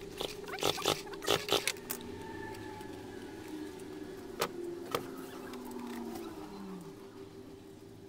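Clicks and knocks of plastic and metal chainsaw parts being handled and fitted on a metal workbench, several in quick succession in the first two seconds, then two single sharp clicks around the middle, over a steady background hum.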